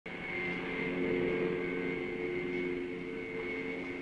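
An engine running steadily: a low drone with a thin, constant high whine above it.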